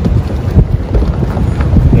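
Wind buffeting a clip-on microphone, a loud low rumble, with light rustling as a roll-top waterproof dry-bag backpack is handled.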